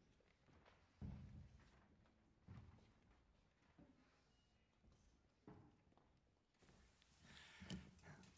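Near silence: quiet hall room tone with a few faint, soft knocks.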